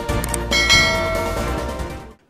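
A bell chime sound effect rings about half a second in over intro music and slowly dies away as the music fades out.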